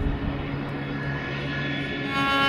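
Jet airliner engines: a steady rushing noise with low held notes underneath, and a higher note joining near the end.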